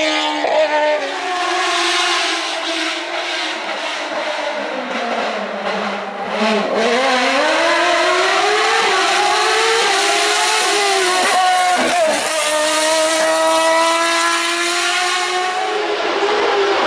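Single-seater race car engine at high revs. The engine note drops around five to six seconds in, then climbs steadily as it accelerates, with a brief break about twelve seconds in like a gear change, and climbs again after it.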